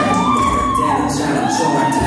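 Recorded song playing, with a siren-like tone that rises and falls twice, about a second each time.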